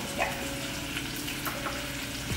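Chicken searing skin-side down in avocado oil in a skillet, giving a steady sizzle as it finishes on the pan's leftover heat after the burner has been turned off.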